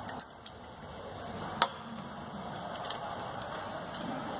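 Small objects being handled on a lab bench over a faint steady room hiss: one sharp click about a second and a half in, and a few light ticks around it.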